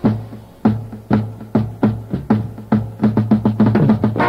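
Drum break in a 1965 garage rock instrumental: the rest of the band drops out and the drum kit plays alone. Single low hits come about two a second, then quicken into a rapid fill near the end.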